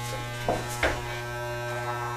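Corded electric hair clippers running with a steady, even buzz, with two faint brief sounds about half a second and just under a second in.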